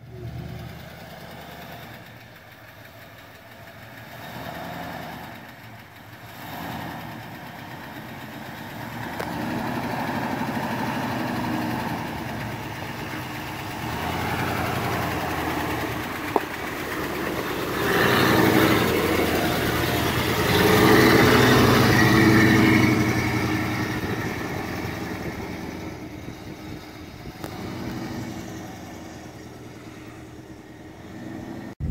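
Square-body GMC Suburban driving slowly up a dirt trail, its engine running low and steady. It grows louder as it comes close and passes around the middle, then fades as it drives off. There is one sharp click partway through.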